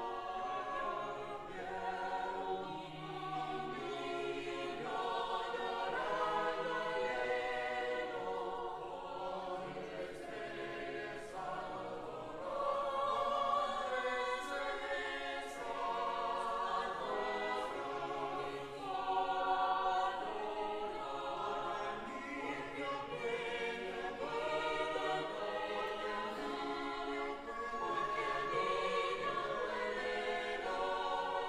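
A choir singing in several parts, the voices moving together through sustained phrases.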